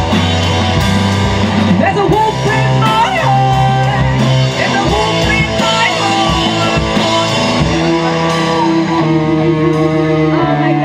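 Live rock band playing an instrumental passage: electric guitars, bass guitar and drums, with a lead line that bends in pitch through the middle.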